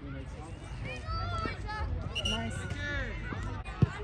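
Scattered shouts and calls from players and spectators at a youth soccer match. Near the end comes one sharp thud of a soccer ball being kicked.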